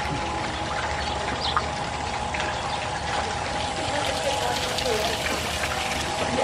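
Steady rush of running water, with a faint steady hum, faint voices in the distance and a few brief high chirps.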